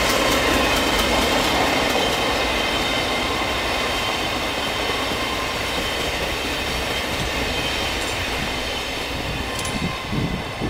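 Passenger coaches of an express train running past at speed: a steady rumble of wheels on rail with a few steady high ringing tones over it, slowly getting quieter as the last coaches go by.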